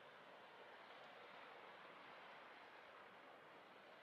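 Near silence: only a faint, steady hiss with no distinct events.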